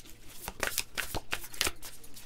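A deck of tarot cards being handled: a quick, irregular run of light card flicks and clicks.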